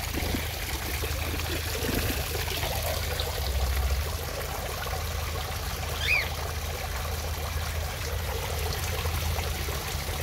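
Water trickling and splashing steadily from a pipe spout into a koi pond, with one short high chirp about six seconds in.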